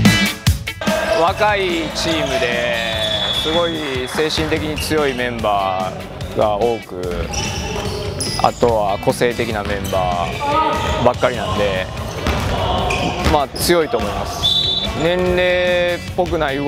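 A basketball bouncing on a gym's wooden floor, a run of short dribble knocks, under a man's voice and background music.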